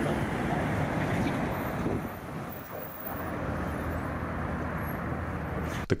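City street traffic noise: a steady wash of passing cars and vans, a little louder in the first two seconds and dipping slightly about halfway through.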